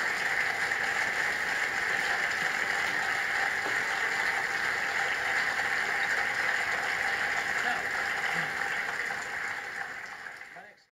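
Studio audience applauding steadily, tailing off near the end.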